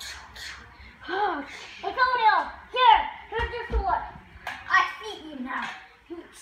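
A child's voice making wordless play noises in short, high, rising-and-falling calls, with a couple of low thumps about three and a half seconds in.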